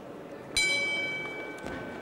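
Boxing ring bell struck once, ringing out and fading away, signalling the start of the second round.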